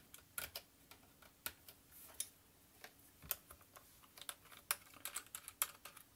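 Small precision screwdriver undoing the tiny screws of a laptop optical drive's metal mounting frame: faint, irregular clicks and ticks of the driver tip and small metal parts being handled.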